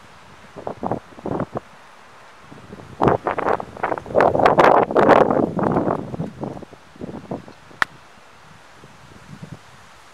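Wind gusting over the microphone, loudest in the middle, then a single sharp click of a golf iron striking the ball about eight seconds in.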